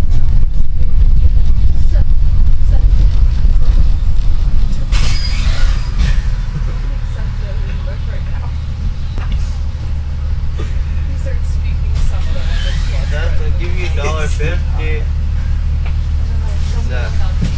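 Bus engine and road noise heard from inside the cabin as a heavy low rumble, loud for the first few seconds and easing off after about five seconds, with a brief hiss around that point. Other passengers' voices are faintly audible in the second half.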